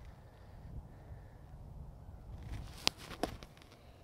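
A wedge splashing through the sand under the ball in a bunker shot: one sharp strike about three seconds in, followed by a couple of fainter clicks.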